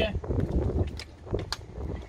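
A person taking a drink of plain water, with a couple of short clicks about a second in, over a low rumble of wind on the microphone.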